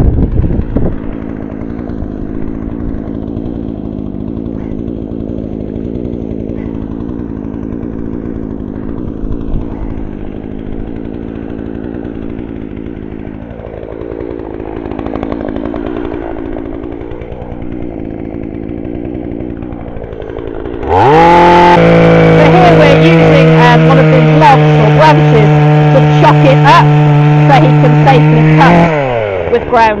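Two-stroke Husqvarna chainsaw idling for about twenty seconds, then opened to full throttle about 21 seconds in and cutting through a fallen branch for about eight seconds, with crackling as the chain bites. Near the end the revs drop back toward idle.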